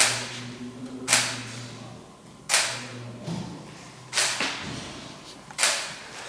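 DSLR camera shutter firing five single shots, about one to one and a half seconds apart, each a sharp click. A faint steady low hum runs underneath.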